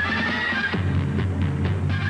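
Instrumental background music for a sports highlight reel, with a steady bass line under higher held notes.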